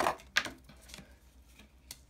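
Clear hard-plastic card case being handled and set down on a table: a brief rustle, a sharp plastic click about half a second in, and a faint tick near the end.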